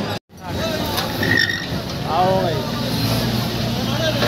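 JCB backhoe loader's diesel engine running with a steady low hum under a crowd's voices and calls. The sound cuts out briefly a fraction of a second in.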